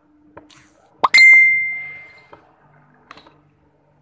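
Two sharp knocks about a tenth of a second apart, the second the loudest and ringing on with a clear single tone that fades over about a second: a cricket ball striking hard in a practice net.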